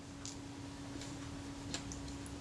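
A few faint, light clicks of small metal camera parts and a tool being handled, over a steady faint hum.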